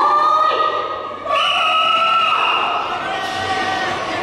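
High-pitched voices calling out in long, drawn-out shouts, held for about a second each and changing pitch from one call to the next.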